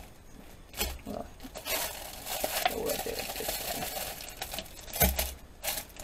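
Clear plastic packaging crinkling as a silicone stamp set on a green backing card is handled and slid out of its sleeve. There is a soft knock about a second in and another near the end.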